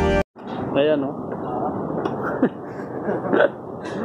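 Background music cuts off abruptly just after the start. Short, indistinct bits of a person's voice follow, coming every second or so over a steady background hum.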